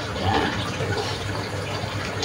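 Steady rushing background noise with a low steady hum beneath it.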